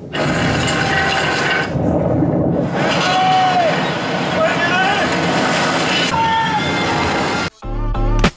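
A film soundtrack playing loud in a cinema auditorium: a stormy-sea scene with dense noise of wind and waves, shouted voices and music, cutting off suddenly near the end.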